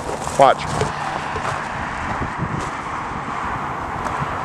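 Steady hiss of road traffic from a nearby roadway, even in level throughout.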